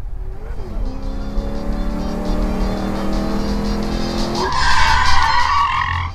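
A car's engine revving higher and higher as it accelerates. About four and a half seconds in, its tyres squeal for about a second and a half as it skids to a stop.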